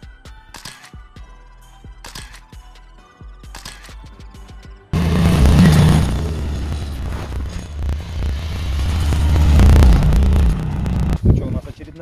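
Background music for about five seconds, then an abrupt switch to a Ski-Doo snowmobile engine running loudly as it rides along, getting louder toward the end before cutting off.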